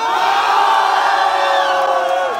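A crowd of many voices shouting together in one long, held yell, the rap-battle audience's reaction to a punchline.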